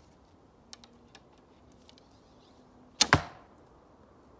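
An arrow loosed from a traditional bow about three seconds in: a sudden, loud snap of the bowstring, two strikes in quick succession. A few faint clicks come before it.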